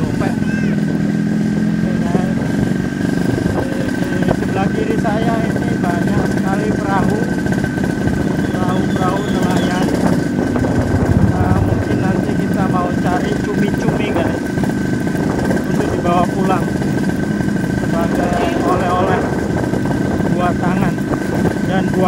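A small engine running steadily, with a thin high whine held over it and people's voices in the background.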